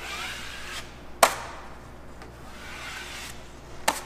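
Steel drywall knife scraping joint compound across drywall screw heads in two wiping passes, with a sharp clack of the knife against a metal mud pan about a second in and another near the end.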